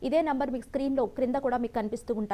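Only speech: a woman speaking Telugu, talking without a break.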